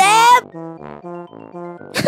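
A man's pitched-up voice crying out 'ouch, it hurts' in the first half-second, then light children's-style background music of short repeating notes, about four a second.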